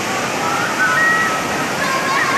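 Muddy floodwater rushing fast through a street, a loud, steady noise of churning water.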